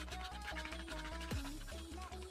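Background music with a pulsing bass and a stepping melody, over the scratching of a metal point dragged across a hard plastic phone case to roughen it.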